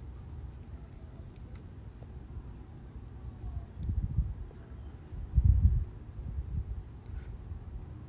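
Scissors cutting a paper napkin and the napkin being handled on a tabletop: faint snips and paper rustling, with two low thuds about four and five and a half seconds in.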